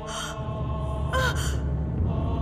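A young woman gasping and sobbing in pain, two strained, breathy cries about a second apart, the pain of labour, over sustained dramatic background music.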